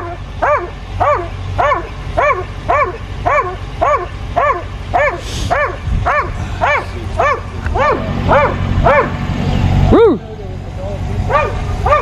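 Police K9 dog barking from inside the patrol car in a steady run of about two barks a second. The barking breaks off briefly after the loudest bark, about ten seconds in, then starts again.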